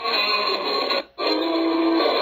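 Live jazz band playing, thin and tinny, as if played back through a small speaker, with a brief dropout about a second in.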